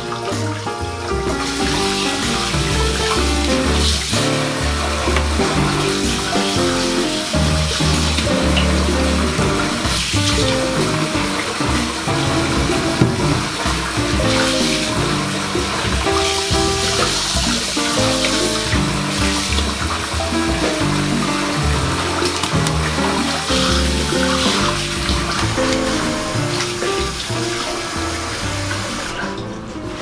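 Background music over a bathroom tap running into a ceramic sink while hands rinse under the stream; the water sound stops near the end.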